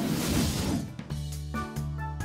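A noisy whoosh sound effect fading out over the first second, then children's background music with a steady bass line and chords starting about a second in.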